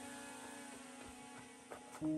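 Faint steady electrical hum, with a few faint short ticks in the second half.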